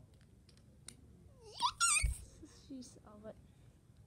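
A child's high-pitched, wavering squeal, rising and then wobbling, about a second and a half in, with a dull thump right after it; short murmured speech follows.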